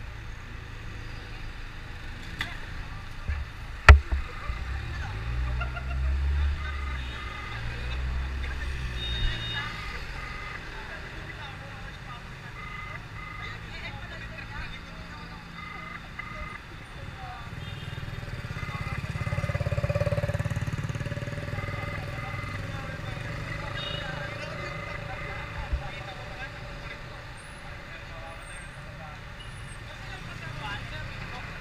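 City road traffic: cars and trucks passing close by with a low rumble, one vehicle swelling up loud and fading away about twenty seconds in. A single sharp knock comes about four seconds in.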